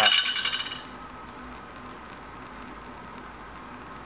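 A brief, bright jingling clink of glass chain links knocking together on a graphite rod, dying away within the first second. After it comes the steady hiss of a Bunsen burner flame.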